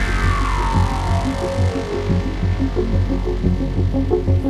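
Hardcore dance music in a breakdown: a synth sweep falls steadily in pitch over pulsing bass and dies away about halfway through, and short synth notes come in as it ends.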